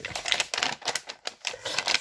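Crumpled brown kraft-paper wrapping crinkling under the hands as a wrapped parcel is felt and handled, a quick irregular run of crisp crackles.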